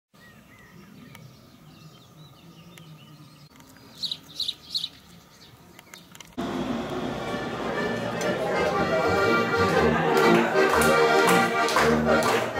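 Quiet outdoor ambience with three short bird chirps about four seconds in. A little past six seconds, music starts abruptly and carries on loud: an accordion band of button accordions playing a folk tune.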